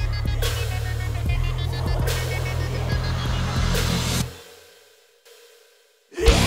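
Metalcore band playing with heavy guitars, bass and drums, crash cymbals landing about every second and a half over a sustained low end. About four seconds in the whole band stops dead, leaving a fading tail that drops to near silence.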